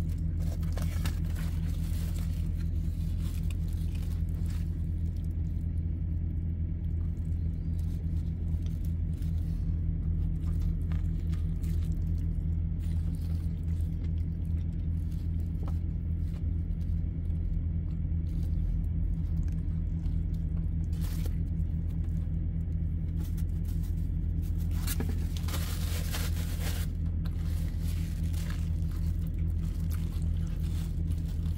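A steady low mechanical hum runs without a break, with paper sandwich wrapper crinkling briefly about two-thirds of the way in and again for a couple of seconds near the end.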